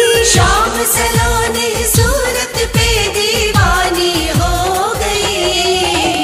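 Hindi devotional bhajan: a singing voice carrying a held, ornamented melody over music with deep drum strokes that slide down in pitch, about two a second.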